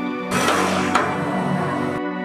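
Film score with sustained tones, over which a roadside stall's large umbrella is wrenched down: a second-and-a-half rush of noise starting about a third of a second in, with a sharp knock near the middle.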